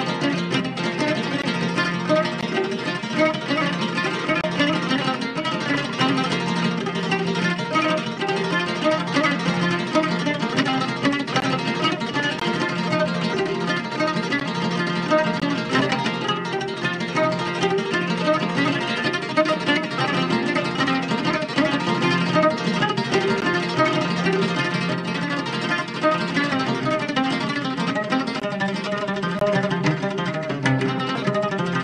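Oud played with rapid plucked notes in an improvised Arabic taqsim.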